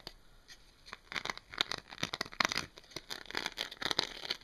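Fingers scratching and rubbing a flexible dimpled sheet, a rapid run of crackly scratches and rustles starting about a second in.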